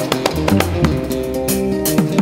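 Background music led by guitar with bass, plucked notes over a steady rhythm of sharp hits.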